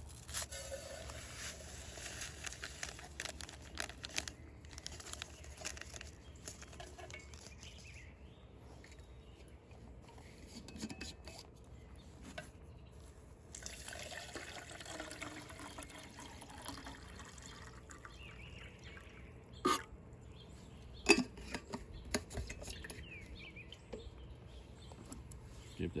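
Drink-mix powder is shaken from a foil packet into a steel canteen cup. Then water is poured in from a stainless steel canteen, trickling steadily for several seconds. Two sharp knocks follow near the end.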